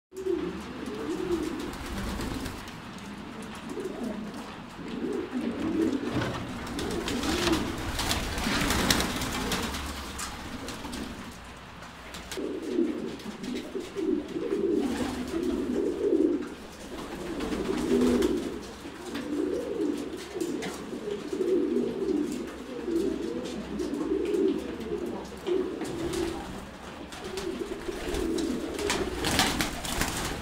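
Domestic pigeons cooing, a near-continuous string of low, rolling coos, with a few brief rustling or scuffling noises in between.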